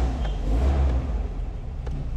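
Mitsubishi Pajero engine just started and running, a steady low rumble.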